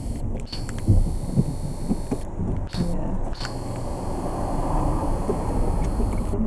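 Low, steady rumble of a car inside the cabin, with a few knocks about a second in and a faint high-pitched beep now and then. A broader rushing noise swells about four to five seconds in.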